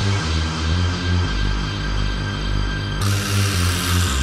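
Happy hardcore / hard house dance music from a DJ mix: a pulsing synth bass line, with a burst of white-noise hiss coming in about three seconds in.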